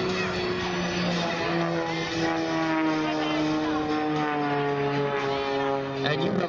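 Extra 300 aerobatic plane's 300-horsepower Lycoming flat-six engine and propeller, a steady drone that slowly falls in pitch as the plane climbs steeply.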